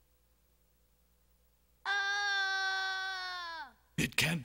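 A child's voice giving one long, flat-pitched cry about two seconds in, held for nearly two seconds and sliding down in pitch as it dies away: a dubbed cartoon boy crying out as he is impaled.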